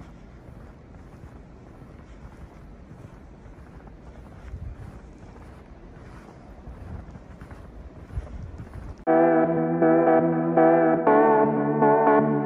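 Wind buffeting the microphone outdoors, with faint irregular crunches. About nine seconds in, background music with sustained chords starts abruptly and is much louder.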